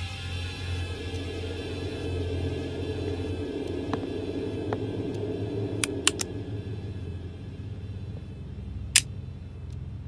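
A low, steady rumbling drone of tense film underscore, with a few sharp clicks about six seconds in and a louder click near the end.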